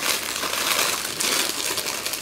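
Continuous crinkling noise of packaging being handled and rummaged through.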